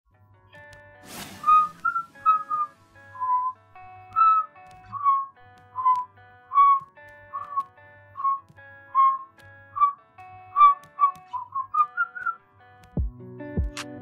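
Song intro: a whistled melody, with small slides between notes, over soft sustained backing chords. There is a short hiss about a second in, and a low beat comes in near the end.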